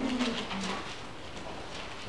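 Two short, faint, low murmured voice sounds in the first second, then quiet room tone.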